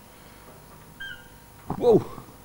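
A man's short, drawn-out exclamation with a sharply falling pitch near the end, the loudest sound here. A brief high beep-like tone comes about a second before it.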